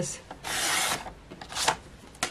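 Tonic paper trimmer's cutting head drawn down its rail, slicing through cardstock with a rasping slide about half a second long, followed by a short scrape near the end.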